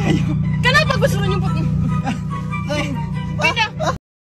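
Talking voices over background music, with a steady low hum underneath; the sound cuts off abruptly at the end.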